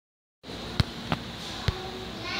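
Three sharp knocks, irregularly spaced, over a steady background hum of a large indoor space; the sound starts abruptly just after a brief silence.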